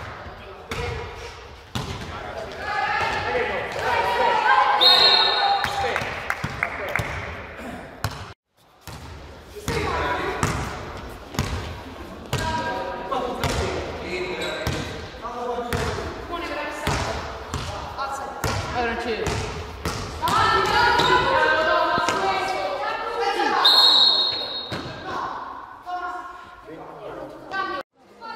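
A basketball bouncing repeatedly on a gym floor, with players' shouts and voices echoing in a large hall. Two short, shrill referee whistle blasts sound about five seconds in and again near the end.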